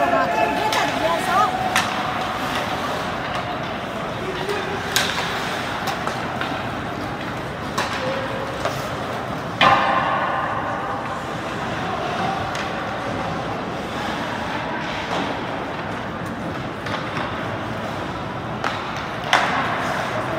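Ice hockey arena during play: spectators' voices over a steady echoing hall noise, with a few sharp knocks of sticks and puck, the loudest about ten seconds in.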